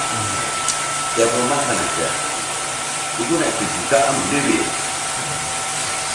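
A loud, steady hiss with a faint, steady high tone in it, under a man speaking a few short phrases into a microphone, about a second in and again around the middle.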